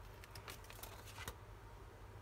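Faint tearing and rustling of a sheet of scrapbooking paper being peeled off the glued edge of a 30x30 paper pad, with a few short crackles in the first second or so.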